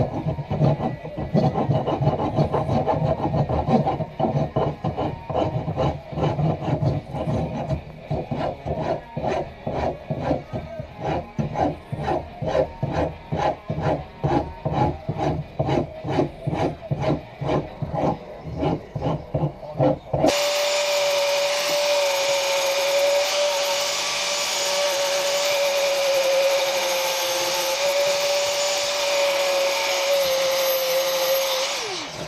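Back-and-forth hand strokes shaping an African padauk hatchet handle, a rhythmic rubbing about two strokes a second. About two-thirds of the way through, an angle grinder starts abruptly and runs with a steady whine, worked against the wooden handle.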